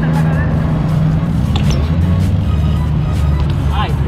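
Background music with a steady deep bass line.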